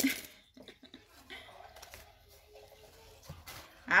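A faint voice in a quiet room, with a light knock a little after three seconds.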